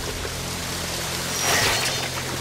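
Rushing, splashing water with a low steady drone underneath, slightly louder about one and a half seconds in.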